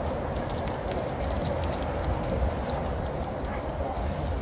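Steady city street traffic noise heard from the open top deck of a sightseeing bus, with scattered faint clicks.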